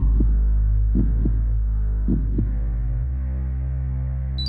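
Horror soundtrack drone: a loud, steady low hum with heartbeat-like double thuds about once a second that stop after the second pair; the drone changes pitch about three seconds in.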